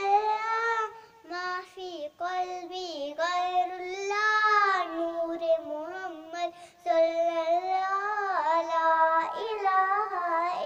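A young girl singing a naat with no accompaniment, in long held notes that bend and waver, broken by short breaths.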